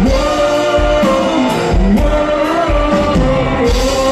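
Live rock band playing: vocals over electric guitar, bass, keyboard and a drum kit, with a steady drum beat under held sung notes.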